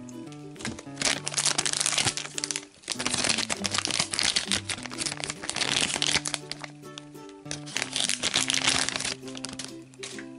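A shiny plastic blind bag crinkling in the hands in repeated bursts as it is handled and opened, over steady background music.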